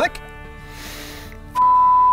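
A steady, single-pitch censor bleep tone cuts in loudly about a second and a half in, after a short lull with faint background music.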